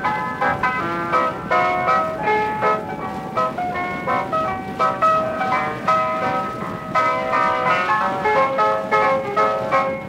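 Instrumental music, several notes sounding at once in a quick-moving melody, played back from a 1942 Wilcox-Gay Recordio home-recorded acetate disc, with the muffled, narrow sound of an old disc.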